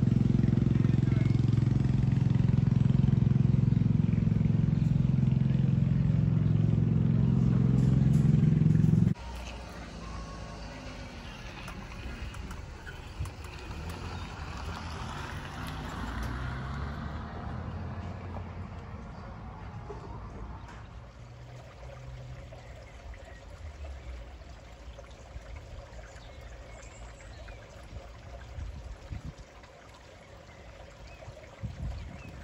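A loud, steady low hum with several pitches, like a motor or fan, which cuts off abruptly about nine seconds in. After it comes much quieter outdoor street ambience, with traffic noise swelling and fading in the middle.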